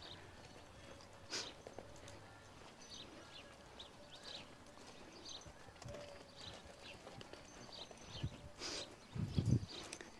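Faint hoofbeats of a horse walking on a sand arena, soft irregular ticks, with a few louder low thumps near the end.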